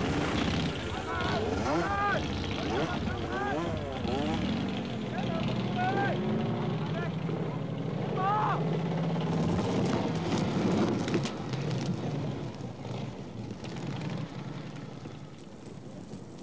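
Distant voices calling out over a steady low rumble, with the voices heard mostly in the first half.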